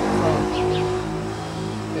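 A steady low hum of several held pitched tones, with short falling bird chirps over it.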